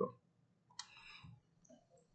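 A faint click at the computer a little under a second in, followed by a brief softer noise.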